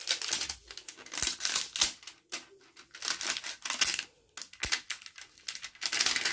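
Thin clear plastic wrapping on a new smartphone crinkling in repeated bursts as it is handled and pulled off by hand.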